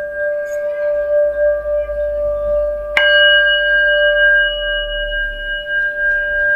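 Small metal singing bowl held on the palm and played with a wooden mallet, ringing with a steady, slightly wavering tone as the mallet works around the rim. A strike about halfway through adds a brighter, higher ring on top.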